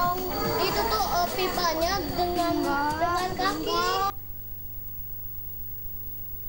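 Children's voices singing over music, which cuts off abruptly about four seconds in, leaving a faint low hum.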